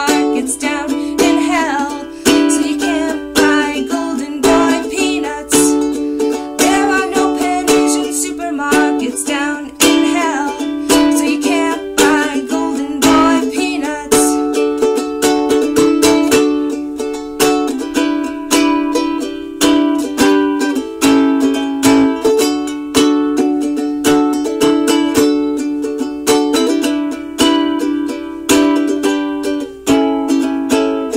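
Ukulele strummed in a steady, even rhythm of chords in a small room, with a voice singing along over roughly the first dozen seconds.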